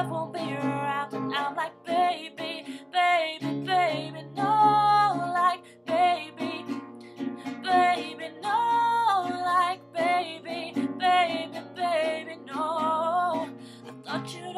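A woman singing a pop melody, accompanied by a strummed acoustic guitar.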